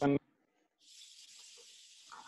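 A soft, steady hiss that starts just under a second in and carries on without a break.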